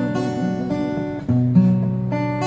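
Acoustic guitar strummed chords accompanying a song, with a new chord struck a little past halfway through.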